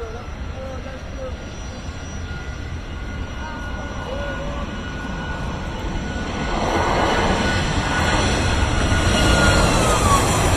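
Jet airliner engines heard from inside the cabin, the noise growing steadily louder as the plane spools up for takeoff, with a thin steady whine that dips in pitch near the end. Faint passenger voices come through briefly.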